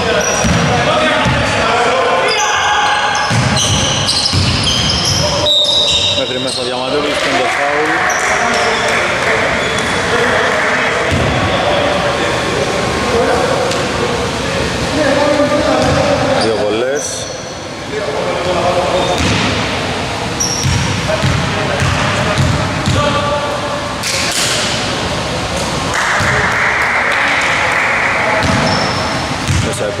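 Basketball bouncing on a wooden court floor, with players' voices in a large echoing gym hall.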